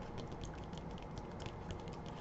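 Faint handling noise: a run of light, irregular clicks and soft rustles as a paperback picture book is gripped and tilted in the hands.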